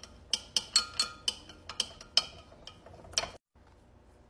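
A spoon clinking against the sides of a ribbed glass jug while stirring date syrup and ghee together: about a dozen sharp, irregular clinks, roughly four a second, that stop abruptly near the end.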